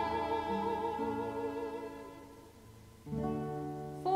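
Violin and acoustic guitar playing a short instrumental passage. A held violin note with vibrato fades away over the first two and a half seconds, then an acoustic guitar chord is strummed about three seconds in and rings on.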